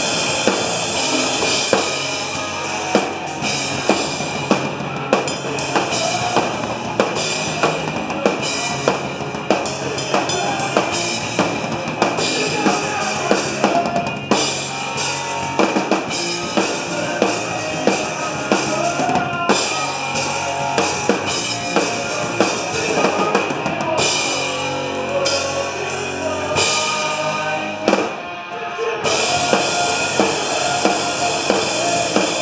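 Live pop-punk band playing loud: electric guitars and bass guitar over a drum kit, with hard drum hits spaced regularly through the passage.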